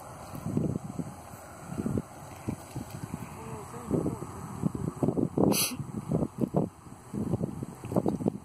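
Indistinct, muffled talk in irregular bursts, with one sharp click about five and a half seconds in. No motor is running.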